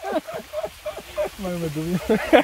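Men talking in short, broken phrases, with a longer drawn-out vowel near the end; speech only.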